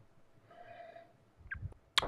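A person breathing in softly, then a single short, sharp click near the end.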